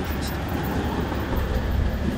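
A steady low outdoor rumble with no distinct events, in a short pause between words.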